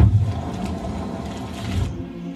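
Opening sound effect of a music video, under the videographer's logo card: a loud grinding, mechanical-sounding noise with a deep rumble. It starts abruptly, swells again near the end, then drops away.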